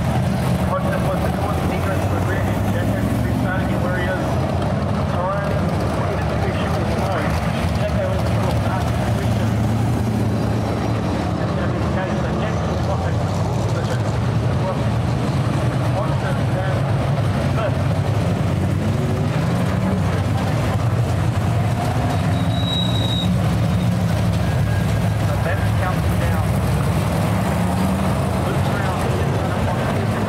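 Engines of a pack of winged dirt-track modified race cars running around the speedway: a continuous loud drone whose pitch rises and falls as the cars accelerate out of the turns and pass.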